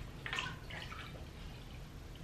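A cloth rag being dipped and squeezed in a glass bowl of water, with a few quiet drips and splashes back into the bowl, the clearest about half a second in.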